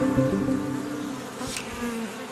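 Many honey bees buzzing on and around honeycomb, a steady, even hum with the tail of background music dying away just after the start.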